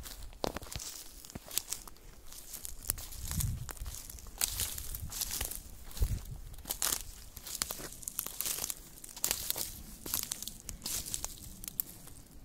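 Dry twigs and cut branches crackling and snapping in irregular clusters, the sound of brush being trodden on or handled.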